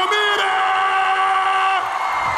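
Arena crowd noise, with one long note held steady in pitch that stops shortly before the end.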